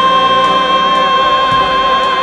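Choir singing, with one long high note held steady over the other voices.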